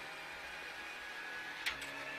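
Renault Clio Rally5 rally car engine heard from inside the cabin, running at a steady pitch, with a brief click near the end.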